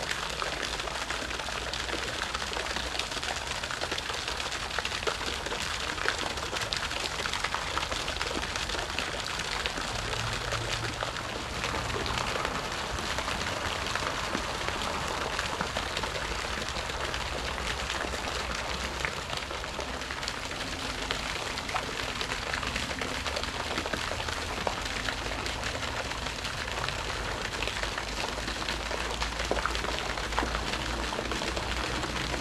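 Garden pond fountain splashing steadily onto the water, a dense even patter of falling drops.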